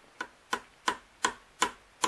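A small hammer tapping a steel stake from a watchmaker's staking set: about six sharp, evenly spaced taps, roughly three a second, driving a carriage-clock ratchet wheel off its arbor.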